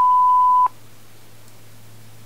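Record beep of a SANYO TEL-DJ5 answering machine: a single steady mid-pitched tone that cuts off about two-thirds of a second in, signalling that message recording has begun. A faint steady low hum follows.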